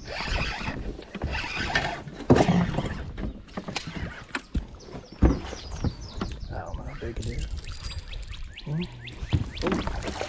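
A bass being reeled in on a spinning rod and splashing at the surface beside a boat, with many small clicks and knocks from the reel and gear. Two louder knocks stand out, about two and five seconds in.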